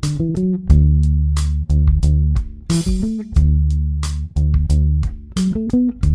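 Fender electric bass playing a major pentatonic fill exercise up the neck: long held low notes alternating with quick rising runs of short plucked notes, one at the start, one about three seconds in and one near the end.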